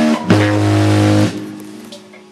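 A rock band plays electric guitar, bass and drums. A final chord is struck with a drum and cymbal hit about a third of a second in. It rings for about a second, then the playing stops and the chord fades away.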